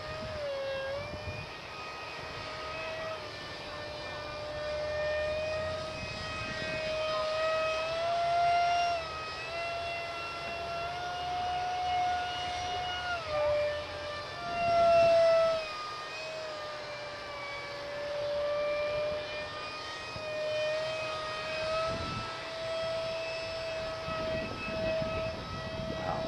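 Electric motor and propeller of a foam X-31 park jet RC model giving a steady whine in flight, its pitch stepping up and down as the throttle changes. It swells loudest for a moment about fifteen seconds in.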